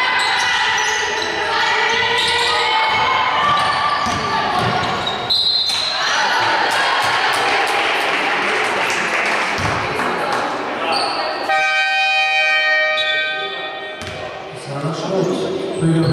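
Basketball bouncing on a hardwood gym floor with players' voices echoing in the hall, a brief high tone about five seconds in, and a steady horn tone lasting about two and a half seconds near the end, typical of a scoreboard horn.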